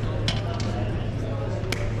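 Gymnasium ambience during a wrestling bout: spectators' voices murmuring over a steady low hum, with two sharp slaps, one shortly after the start and one near the end.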